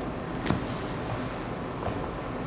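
Steady hum of control-room equipment, with one sharp click about half a second in.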